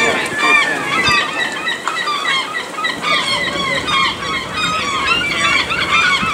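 Many birds chirping and calling at once, short overlapping calls in a dense chorus.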